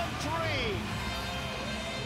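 A voice calls out briefly with a falling pitch about half a second in, over steady music in an ice hockey broadcast.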